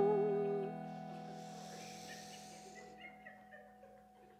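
The last sung note of a song, held with vibrato, ends within the first second, and the final acoustic guitar chord is left ringing and slowly fades to near silence: the end of the song.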